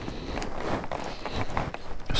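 Handling noise from a GoPro action camera just restarted and set back in place: light rustling and a few soft clicks over a steady hiss.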